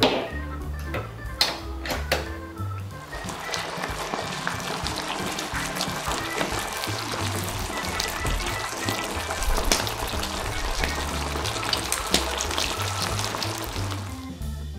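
Background music over a dense crackling sizzle of sauce-coated food cooking in an electric griddle pan; the sizzle builds up about three seconds in. A few sharp knocks come near the start.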